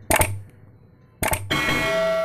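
Subscribe-button animation sound effects: a quick double mouse click near the start and another about a second later, the second followed by a bell ding that keeps ringing.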